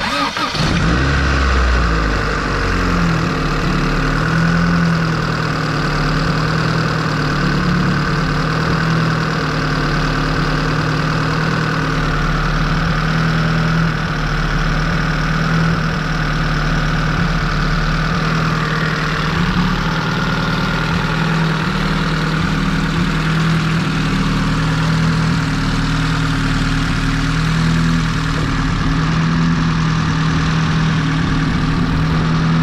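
Honda Civic engine starting, catching suddenly and settling after about two seconds into a steady idle.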